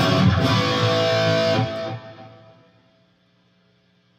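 Electric guitar played loud through a PRS Archon amp's high-gain channel, ringing chords that are cut off about two seconds in. Only a faint low hum from the amp remains after that.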